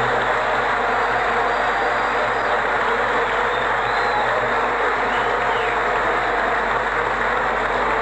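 Large theatre audience applauding steadily, a dense even clatter of many hands.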